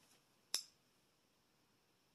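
A single short, sharp click about half a second in, from a makeup compact or palette case being handled. Otherwise near silence with faint room tone.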